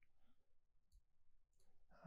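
Near silence, with a few faint clicks of a computer mouse about a second in and again near the end.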